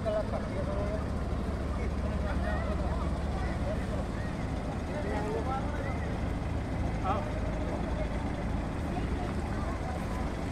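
Heavy diesel engines of mobile cranes and a truck running with a steady low hum, under the chatter of a crowd.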